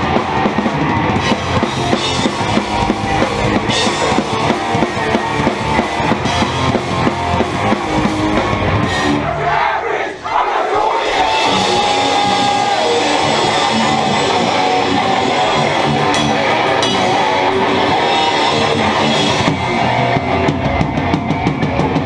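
Hardcore punk band playing a fast song live at full volume: pounding drum kit, distorted electric guitars and bass. The band drops out for a moment about ten seconds in, then comes straight back.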